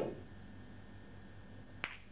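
Snooker cue tip striking the white, heard right at the start. Then, near the end, a single sharp click as the white hits the black ball after swerving around the red.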